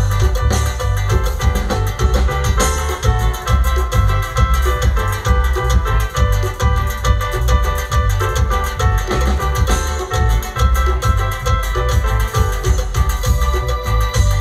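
Live Purépecha band music played for dancing: an instrumental passage with a steady, even bass beat under melodic instrument lines.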